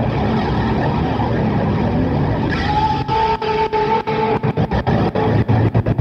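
Motor vehicle engine noise used as a sound effect at the opening of a song's track. About halfway in, a steady two-pitch tone joins it, and a rapid run of sharp clicks follows.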